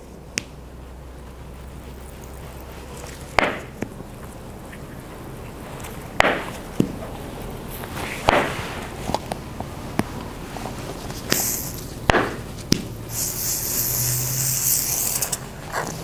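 Squeezed plastic applicator bottle of perm solution: a few short squirts and sputters several seconds apart, then a longer hissing stretch near the end, as the waving lotion is worked over the perm rods.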